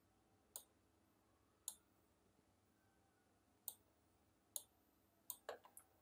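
Faint computer mouse clicks, about seven, spaced irregularly, with a quick run of three or four near the end; otherwise near silence.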